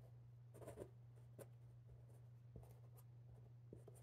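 Faint rustling and a few light ticks of a paper flannel-board figure being slid and pressed onto the felt board, over a faint steady low hum.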